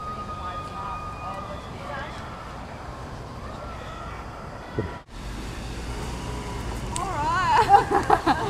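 An emergency-vehicle siren holds a long tone that slowly rises and falls. After a sudden break about five seconds in, it switches to a rapid up-and-down yelp that grows louder near the end.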